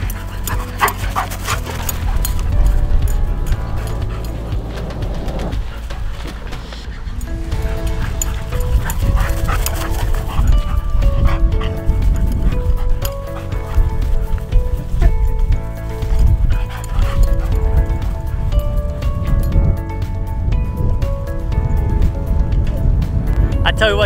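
Background music playing over an English cream golden retriever and a German shepherd mix puppy barking as they play-fight.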